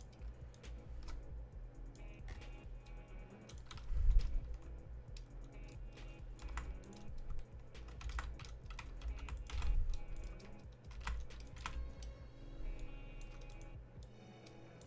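Computer keyboard and mouse clicks, irregular and quick, over a lo-fi beat playing quietly from the music software. A low thump about four seconds in is the loudest moment.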